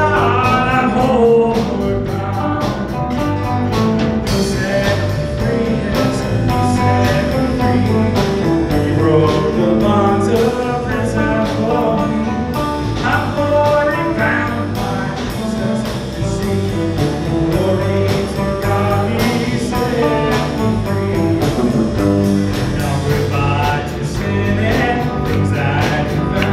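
Live worship band playing a gospel hymn, with acoustic guitar, electric guitar, electric bass and keyboard under singing.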